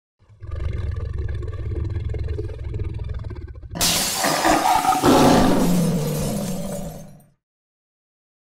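Logo-intro sound effects: a steady low rumble, then about four seconds in a sudden loud crash of shattering glass with a lion's roar, fading out near the end.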